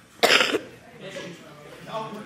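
A single short, loud cough about a quarter second in, followed by faint background voices.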